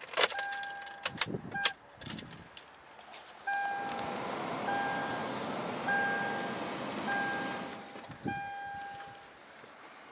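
A few clicks and rattles, then a Toyota Tundra's dashboard warning chime sounding five times, about once every second, over a steady rushing noise in the cab.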